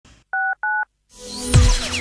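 Two short two-tone electronic beeps like telephone keypad tones, then a rising whoosh with falling electronic sweeps as a TV station's jingle begins.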